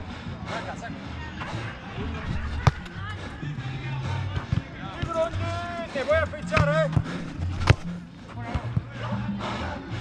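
Football kicked twice on an artificial-turf pitch, two sharp strikes about five seconds apart, the second the loudest. Players shout to each other in between, over background music.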